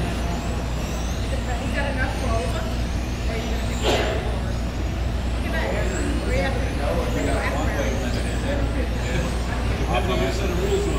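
Electric 1/10-scale RC racing cars whining around the track, many high-pitched motor whines rising and falling in pitch as they accelerate and brake, over a steady low hum and background chatter. One sharp knock about four seconds in.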